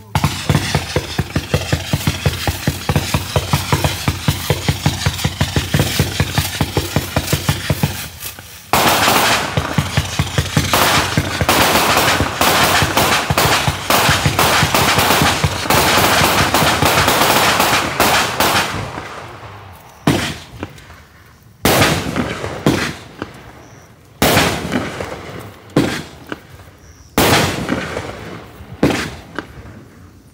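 A Black Cat 'Salute to Service' 170-shot consumer firework cake firing. It starts with a rapid, even run of shots for about eight seconds, then fires a denser, continuous barrage for about ten seconds. After that come four separate loud bursts, each with a fading tail.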